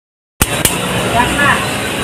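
After a brief total dropout, faint voices of people talking over steady outdoor background noise, with a couple of light clicks.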